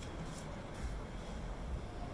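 Wind rumbling on the microphone, a steady, uneven low rumble with a faint outdoor hiss and no distinct sound over it.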